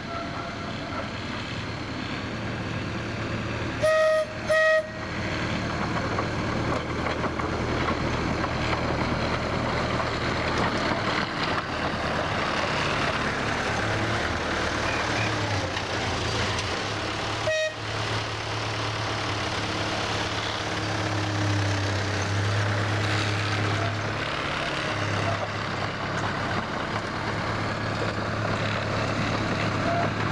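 Miniature railway locomotive running with a steady low engine drone, sounding two short toots about four seconds in and one more short toot a little past halfway; the running gets louder in the second half as it approaches.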